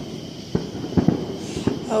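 Fireworks going off outside, about five sharp pops at irregular intervals, some less than half a second apart, over a steady chirring of crickets.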